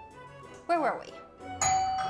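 Doorbell chime struck about one and a half seconds in, its tone held, signalling someone at the door. A second earlier comes a short sound that swoops up and then down in pitch.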